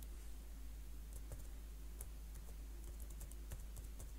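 A few scattered computer keyboard keystrokes, a password being typed, over a faint steady low hum.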